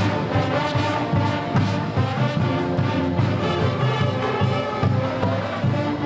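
High school pep band playing live: sousaphones, saxophones, clarinets and drums in an up-tempo number with a steady beat.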